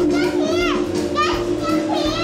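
Children's voices in an indoor play area: several high-pitched cries and calls that sweep steeply in pitch, over background music with a steady held note.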